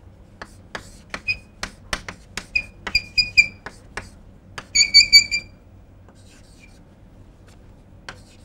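Chalk writing on a blackboard: quick taps and scratches of the strokes, with short, high squeaks of the chalk. The loudest is a run of squeaks about five seconds in, after which the writing stops.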